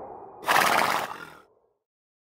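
A horse whinny sound effect, about a second long and starting about half a second in, over the fading tail of the closing music.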